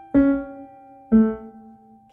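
Digital piano played slowly and legato: two notes struck about a second apart, the second lower, each left to ring and fade while a higher note is held down underneath.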